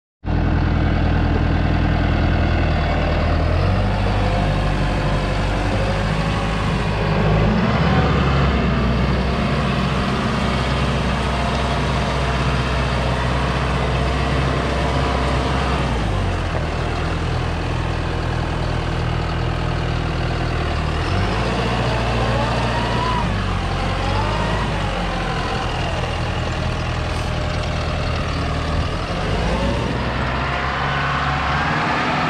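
John Deere 5085E tractor's four-cylinder diesel engine running as the tractor is driven, its note stepping up and down with engine speed several times.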